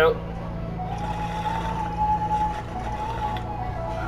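Air drawn through a water-filled glass bong during a water test, a thin steady whistle-like tone held for about three seconds.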